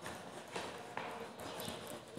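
A few faint taps or knocks, about half a second apart, over quiet room tone.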